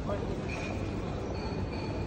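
Steady low rumble of a guide robot rolling across a stone floor, with faint thin high whines coming in about half a second in and again past the one-second mark.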